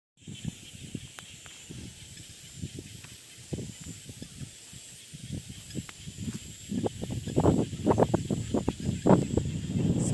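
A steady high-pitched chorus of frogs and insects calling around a rain-filled pond. Irregular low rumbles and knocks of wind and handling on the phone's microphone run under it and grow louder in the second half.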